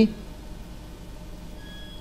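Steady low hum and faint hiss of background noise, with two faint brief high tones near the end.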